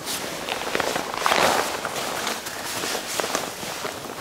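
Stiff nylon drysuit fabric rustling and crinkling, with many small crackles, as the crouched wearer squeezes trapped air out of the suit past the neck gasket. It is a little louder about a second and a half in.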